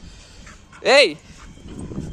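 A dog gives a single short bark, rising and then falling in pitch, about a second in.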